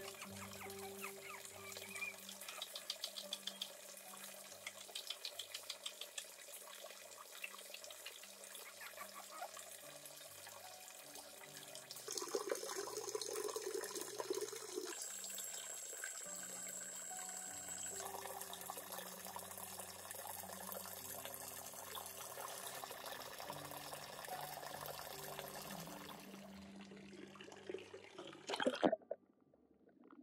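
Water pouring steadily from a spout into a pond, a continuous trickling splash. Soft sustained low tones run beneath it.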